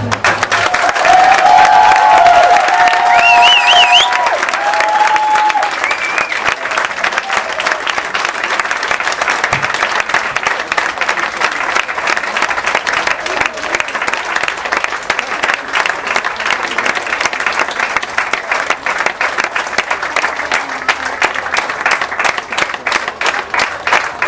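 Audience applauding steadily, loudest in the first five seconds, with a few voice calls over the clapping early on.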